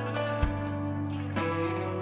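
A live rock band playing an instrumental passage: electric guitars holding sustained notes over bass and drums, with the chord changing about every second.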